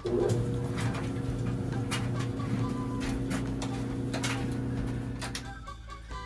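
Clothes dryer running: a steady low hum that starts abruptly and cuts off near the end, with a few faint knocks.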